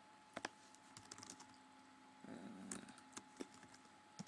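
Faint, scattered keystrokes on a computer keyboard, a few irregular clicks at a time, as code is typed into a text editor.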